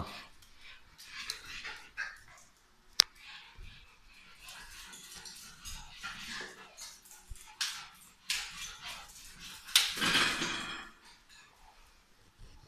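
A Parson Russell terrier excited by disco light spots, yapping and whimpering in short bursts, with its loudest outburst near the end. A single sharp click comes about three seconds in.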